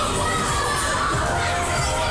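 Children shouting over a crowd's hubbub, several high voices rising and falling together.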